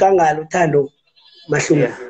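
A man's voice in two stretches with a short pause between, its pitch wavering.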